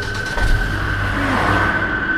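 Car engine sound effect as a car pulls away: a rushing swell about half a second in that thins out near the end, over a steady low engine hum. A sustained high drone note from the horror score lies underneath.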